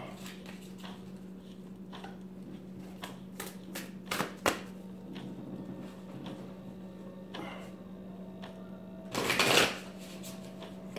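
A deck of oracle cards being shuffled by hand: scattered soft flicks and rustles of the cards, with a louder burst of rustling near the end. A steady low hum runs underneath.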